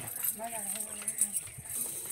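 A goat bleating once, a drawn-out wavering call lasting about a second.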